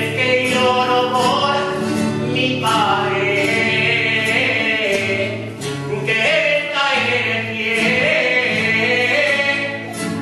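A man singing long, held notes that bend and waver, in a Spanish folk style, with an acoustic guitar accompanying.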